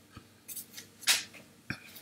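A quiet pause between spoken phrases: a couple of short breaths, the louder one about a second in, and a sharp mouth click near the end.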